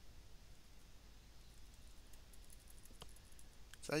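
Faint, scattered clicks of a computer keyboard and mouse while an expression is typed and edited.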